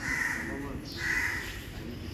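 A crow cawing twice, each call about half a second long and about a second apart.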